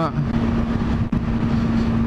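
Honda Hornet motorcycle's inline-four engine running steadily at cruise, a constant hum over road and wind rush, heard from on the bike. There is a brief dip in level about halfway through.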